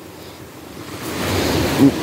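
Small waves washing up onto a sandy beach, the wash swelling into a louder hiss about a second in.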